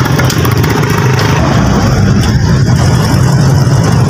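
Steady low rumble of a motor vehicle's engine running, loud and unbroken.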